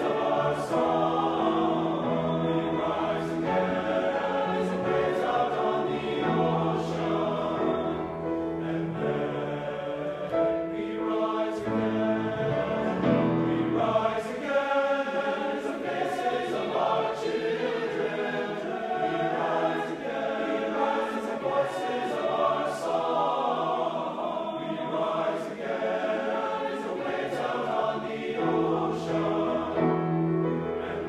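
Men's choir singing sustained chords. The low bass notes drop out for a stretch in the middle and come back near the end.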